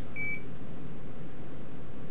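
A single short electronic beep from the ultrasound machine: one steady high tone lasting about a third of a second just after the start, over a steady low room hum.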